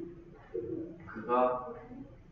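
A man's voice making two short drawn-out hums, the second, in the second half, louder.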